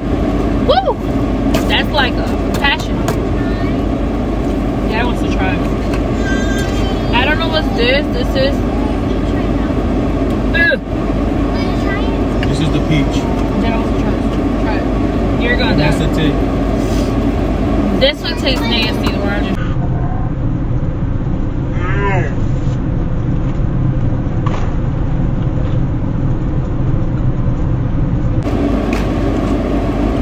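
Steady low rumble of a car running, heard inside the cabin, with people's voices talking over it.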